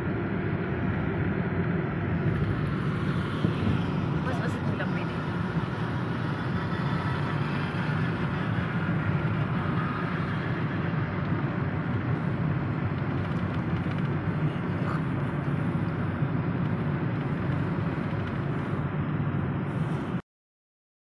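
Steady road and engine noise of a moving car, heard inside its cabin.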